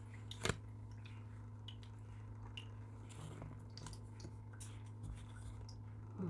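Tarot cards being handled on a table: a sharp tap about half a second in, then faint rustles and small clicks, over a steady low hum.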